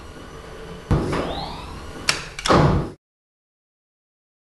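Whoosh-and-slam sound effects: a rising swish with a heavy hit about a second in, another rising swish, then two sharp metallic clanks a little after two seconds, the last the loudest. The sound cuts off suddenly about a second before the end.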